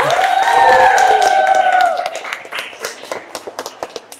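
A group of children clapping, with a long high cheer from several voices over the first two seconds; the clapping then thins out and fades toward the end.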